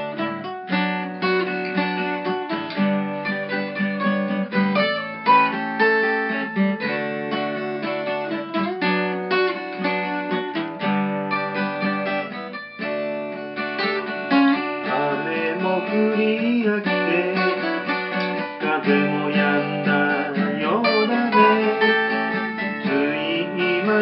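Acoustic guitar strumming a folk song in a steady rhythm. A voice singing comes in about halfway through.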